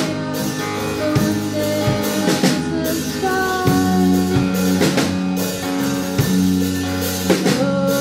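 Live rock band playing: electric guitar, electric bass and drum kit at a steady beat, with a woman singing held notes over them.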